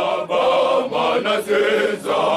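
A men's choir singing a chant together in short phrases, their voices briefly dropping out between phrases.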